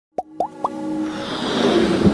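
Intro sound effects for an animated logo: three quick rising pops about a quarter second apart, then a swelling whoosh that builds steadily in loudness.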